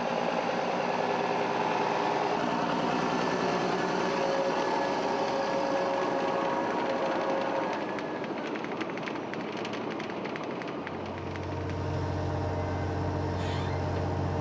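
A tractor engine and a Shelbourne Powermix Pro-Express diet feeder running steadily while the feeder's conveyor unloads mixed feed. The sound dips a little about eight seconds in, and a deeper low hum joins about three seconds later.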